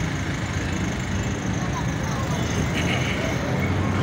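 Steady low rumble of outdoor background noise with faint, indistinct voices.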